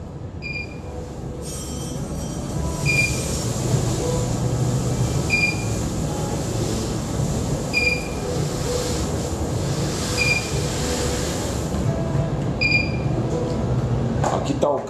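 Milled malt poured from a plastic bucket into the strike water of a stainless steel mash kettle: a long, steady rushing hiss that builds over the first couple of seconds and fades near the end. A brewing controller's alarm beeps about every two and a half seconds, signalling that the water has reached mash-in temperature.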